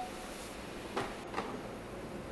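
Two light clicks about half a second apart, about a second in, as a wheelchair is moved onto a portable boarding ramp at a train door, over low station background noise.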